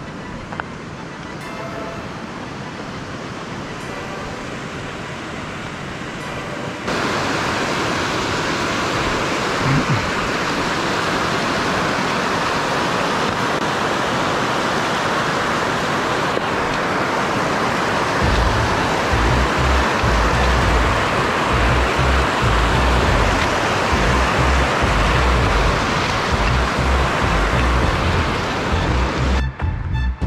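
Mountain stream rushing and splashing over rocks: a steady, loud hiss of water that jumps suddenly louder about seven seconds in. Irregular low thuds or rumbles join it from a little past the midpoint.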